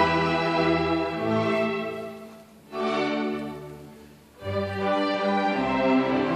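Chamber string orchestra of violins, cellos and double basses playing sustained bowed chords. Twice, a little before halfway and again past it, the sound fades almost away and a new chord comes in.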